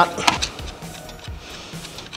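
Soft background music, with a few light clicks near the start from hands working at the car battery's positive terminal post.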